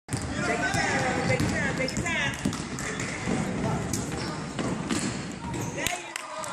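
Basketball being dribbled on a hardwood gym floor, a string of sharp bounces, with a few short high squeaks from sneakers and voices of players and spectators echoing in the gym.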